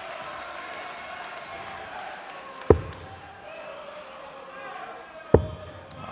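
Two darts striking a bristle dartboard, two sharp thuds about two and a half seconds apart, over a low background murmur.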